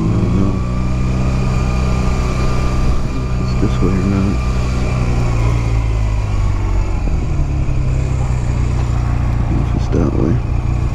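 Honda Rebel 250's air-cooled parallel-twin engine running at low, steady revs in stop-and-go traffic, heard through a microphone inside the rider's helmet.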